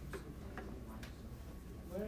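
Faint, irregularly spaced clicks over a low steady hum: quiet classroom room tone.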